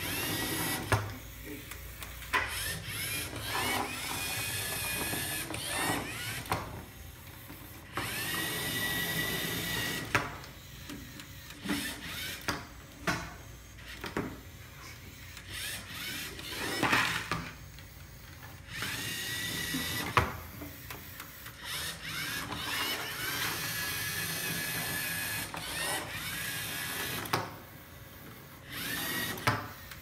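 Small LEGO robot's electric drive motors whirring in repeated bursts a few seconds long, each starting with a rising whine that settles to a steady pitch, with short pauses between as the robot drives and turns. A few sharp knocks break in now and then.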